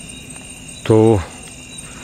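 Steady high-pitched chorus of night insects, several continuous shrill tones at once. A man's voice says one short word about a second in.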